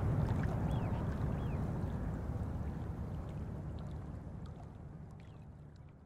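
Moving water, a rushing, gurgling ambience with a few faint short high chirps, fading out steadily.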